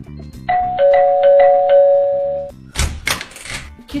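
A phone ringing on a call: a two-note electronic ringtone, a higher and a lower tone held together for about two seconds with light ticks over them. Then a short rustling burst of noise.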